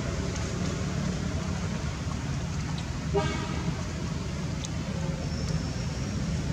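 Steady low rumble of road traffic, with one short, high honk-like toot about three seconds in.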